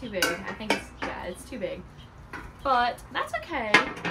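A ceramic candle jar and its lid clinking and knocking against a glass tabletop, several sharp clicks spread through the moment.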